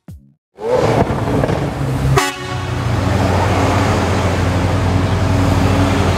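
Lamborghini Aventador's V12 running at low revs as the car rolls by, a loud steady rumble that starts about half a second in, with one sharp crack about two seconds in.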